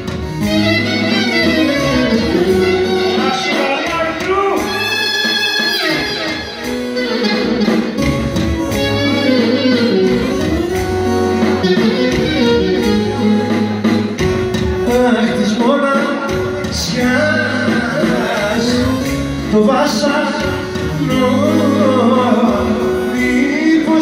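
Live Greek folk dance music from a band, with a clarinet lead and singing over keyboard accompaniment.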